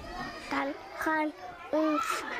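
A young child speaking a few short, high-pitched phrases.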